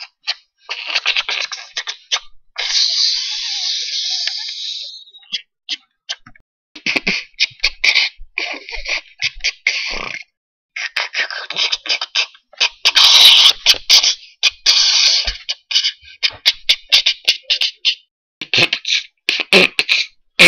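A boy beatboxing with his hand cupped over his mouth: rapid clicks and hissing percussive bursts in short phrases, with one long hiss a few seconds in and brief pauses between phrases.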